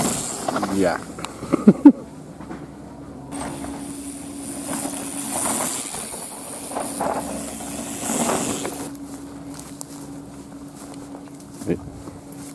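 A mountain bike passing close by on a dirt forest trail, loudest in the first two seconds with a few sharp knocks. A faint steady hum and quieter rushing swells follow.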